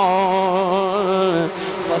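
A man's voice singing a long held note with vibrato in a Punjabi devotional verse about the Prophet, amplified through a microphone. The note ends about one and a half seconds in.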